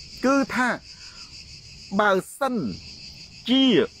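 A steady, high-pitched insect chorus runs without a break under a man's short spoken phrases.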